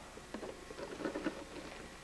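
Faint, irregular rustling with small crackles, from handling among leaf litter and debris on the forest floor.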